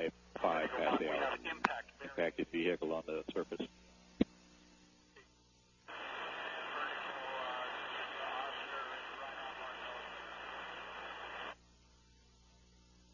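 Radio communications chatter: a voice over a narrow radio link for the first three and a half seconds, a single click, then about five and a half seconds of open-channel hiss with a faint voice under it that cuts off abruptly.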